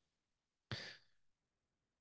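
Near silence, broken about two-thirds of a second in by one short breath from the speaker, a brief airy intake lasting about a third of a second.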